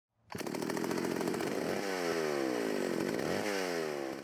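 Gas chainsaw running, starting abruptly just after the beginning and holding a steady pitch, then revving up and falling off twice, the second rev dying away at the end.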